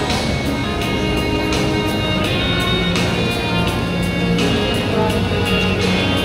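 Recorded music with a steady beat, several instruments playing.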